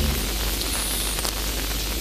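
Steady hiss of a noisy recording, with a low electrical hum underneath.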